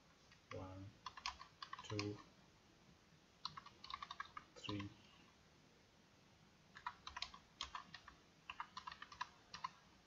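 Computer keyboard being typed on: short runs of quick key clicks with pauses between them.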